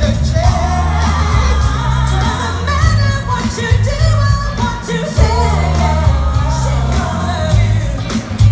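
Live soul-pop band with women singing the lead over a heavy bass line, heard in a large arena.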